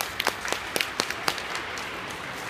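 Scattered hand claps from the audience as applause begins: about seven separate sharp claps over a low steady crowd hubbub.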